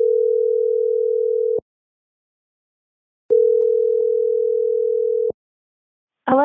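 Telephone ringback tone of an outgoing call that has not yet been answered: a steady tone lasting about two seconds, a pause of under two seconds, then a second identical tone.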